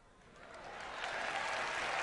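Audience applauding, building up from silence about half a second in and growing steadily louder.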